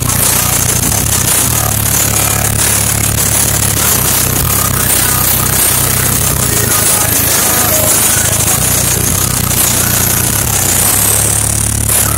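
Very loud bass-heavy music played through a car audio system's wall of large subwoofers. Deep sustained bass notes shift in pitch every few seconds, with a harsh distorted edge over them.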